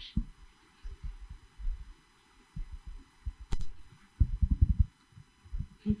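Microphone handling noise: irregular low thuds and bumps as a handheld microphone is moved, with a sharp click about three and a half seconds in and a quick run of thuds just after.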